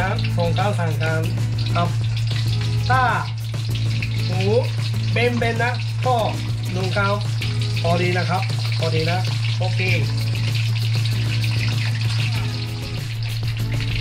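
Breaded pork cutlets (tonkatsu) deep-frying in hot oil in an iron pan, a steady sizzle and bubbling during their final third frying, under background music with a melody.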